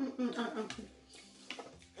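Brief quiet speech at the start, then a near-quiet room with one short click about one and a half seconds in.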